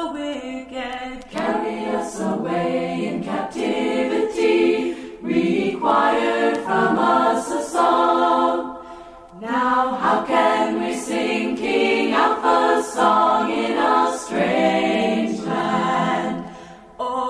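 Unaccompanied vocal music: a group of voices singing a cappella, in phrases with short breaks between them.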